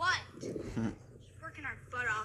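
Speech: a man's voice in short phrases, with a brief pause between them.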